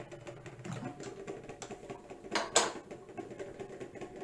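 Light clicks and taps of a plastic idli mold being handled on a stone counter, with one brief louder clatter about two and a half seconds in.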